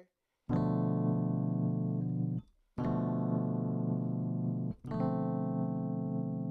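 Three held keyboard chords played one after another, each cut off cleanly before the next, the third running on: a chord progression being tried out on a keyboard.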